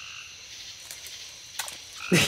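Nighttime swamp chorus of frogs calling, over a steady high insect trill, with a couple of faint clicks about a second in.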